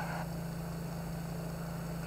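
A steady low electrical hum with a faint hiss and a few thin high whines underneath: the background noise of the recording, with no clear footsteps or music.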